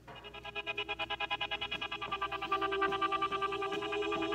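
Synthesizer intro of the recorded backing track: a fast, evenly pulsing chord that starts suddenly and swells steadily louder.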